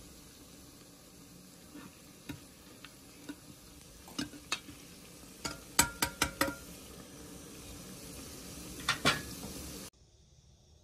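Sliced onions sizzling in hot oil in a metal pot, with a steel ladle stirring them and knocking against the pot's sides. The knocks come singly at first, then four in quick succession about six seconds in and two more near the end.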